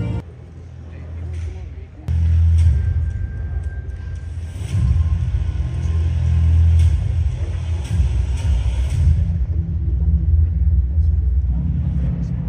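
A loud, deep rumble from a tribute video's soundtrack, played over a large hall's sound system. It starts suddenly about two seconds in, after the music cuts out, with sharp knocks through the middle of it.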